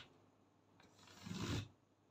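Tailor's chalk drawn along a ruler across crepe fabric, marking a line: one faint stroke of about half a second, building and then stopping short about a second and a half in.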